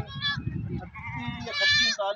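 Goat bleating: a short call just after the start and a louder, longer one near the end.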